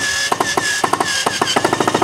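Cordless drill running against a wooden fence picket: a steady motor whine with a rapid clicking that speeds up in the second half.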